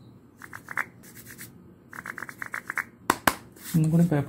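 Fingers rubbing and scratching over a wooden block in two short runs of quick scratches, then two sharp knocks near the end as the block is handled.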